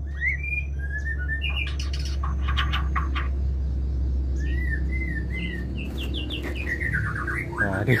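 White-rumped shamas calling with short whistled chirps that glide up and down, ending in a quick run of rising sweeps near the end. It is the courting call of a male with a newly paired female, taken as a sign that the pair suits each other. A steady low hum runs underneath.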